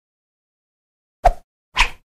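Two short pop sound effects about half a second apart, near the end of an otherwise dead-silent stretch, accompanying an animated title.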